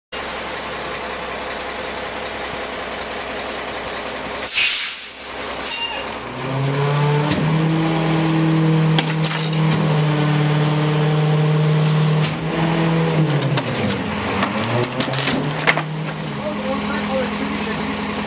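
Rear-loading garbage truck: the diesel engine idles, a short loud hiss of released air comes about four and a half seconds in, then the engine speeds up as the hydraulic packer cycles, with sharp cracks and crunches of furniture being compacted. The engine drops back down near the end.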